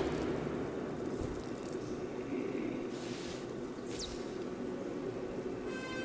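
Film soundtrack played quietly: a low, hissy rumbling haze, with a brief high falling whistle about four seconds in.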